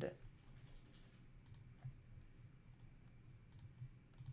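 Near silence with a few faint, separate clicks from working a computer.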